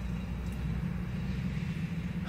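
Steady low hum of an idling car, heard from inside the cabin.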